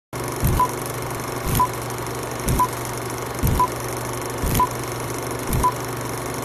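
Old film-leader countdown sound effect: a steady hiss with a low thump and a short high beep once a second.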